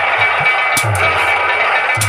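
Instrumental music of a nautanki folk-theatre performance: drum strokes every half second or so under held melody notes.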